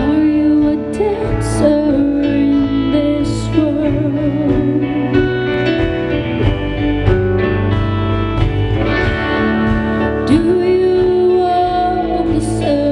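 Live band playing a song: electric guitars over bass and drums, with a melody line sliding between notes.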